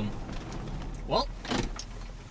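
Low, steady hum of a car at idle heard from inside the cabin, with a short rising sound a little past halfway.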